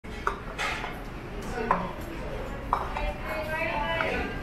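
Food bowls knocking down onto a table as they are served: three sharp knocks about a second apart, with voices coming in near the end.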